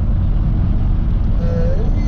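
Steady low road and engine rumble heard inside a moving van's cab, with a brief hum from the man about one and a half seconds in.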